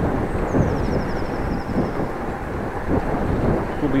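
Wind noise on a bike-mounted action camera's microphone while cycling: a steady low rushing rumble, with a faint high trill in the first half.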